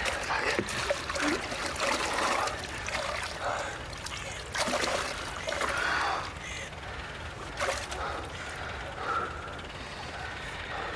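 Water splashing and sloshing in a hole in river ice as a heavy body is pushed under, in uneven splashes.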